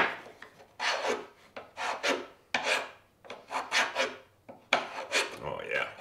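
Lie-Nielsen bed float (a push-style plane-maker's float) shaving the cheek of a wooden tenon in short push strokes, about two a second, trimming it to fit its mortise.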